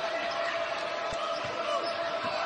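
A basketball being dribbled on a hardwood court, with a few bounces about a second in, over steady arena background noise.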